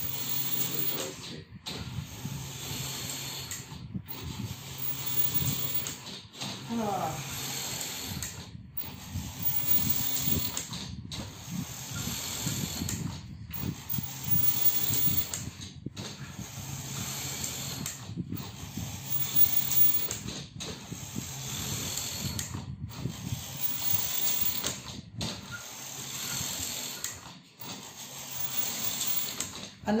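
DC-motor-driven knitting machine carriage running back and forth across the needle bed at its highest speed setting, a steady mechanical hum with fine clatter and hiss. It breaks off briefly about every two and a half seconds as the carriage stops and reverses at the end of each row.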